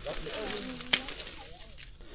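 Faint voices of people talking in the background, with a single sharp click just under a second in.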